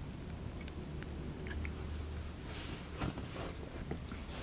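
Faint handling noises: a few small clicks and a short rustle about three seconds in, over a low steady hum.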